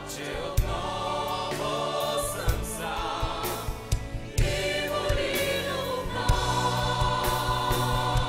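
Mixed choir and soloists singing a song with a live band accompanying, sustained voices over a steady beat and low notes.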